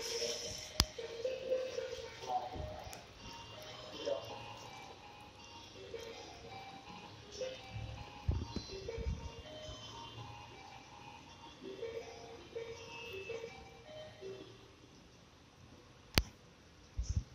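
A voice talking over music, both at a moderate level, with a single sharp click just under a second in.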